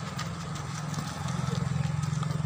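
A small engine running with a low, fast-pulsing hum that grows louder a little over a second in.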